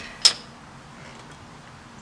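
A sharp click about a quarter second in, then only faint steady background noise.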